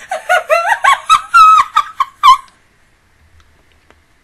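A woman's high-pitched giggling laughter in quick peals that rise and fall, stopping about two and a half seconds in.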